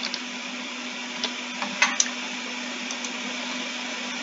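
A steady low electrical hum and hiss of background noise, with a few light clicks scattered through it, typical of mouse clicks while a computer is operated.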